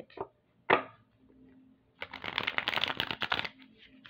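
A deck of chakra oracle cards being riffle-shuffled. A single sharp tap comes under a second in. About two seconds in, a rapid fluttering riffle follows and lasts about a second and a half.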